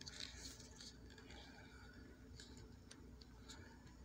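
Near silence with a few faint, scattered ticks from handling a B-Man P17 .177 air pistol with its breech open, a pellet just tapped down into it.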